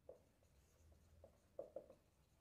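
Marker pen writing on a whiteboard: a few faint, short strokes, three of them close together near the end.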